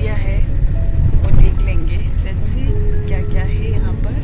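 Steady low rumble of a car's engine and road noise heard from inside the cabin, with a woman talking over it.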